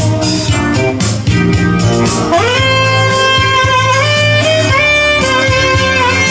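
Alto saxophone playing a melody, sliding up into a long held note about two seconds in and then stepping between sustained notes, over electronic keyboard accompaniment with a steady bass and beat.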